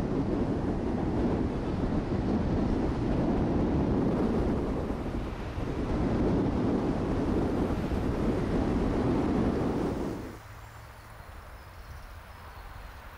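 Loud, steady rushing noise of wind and road traffic that cuts off suddenly about ten seconds in, leaving a much quieter outdoor ambience.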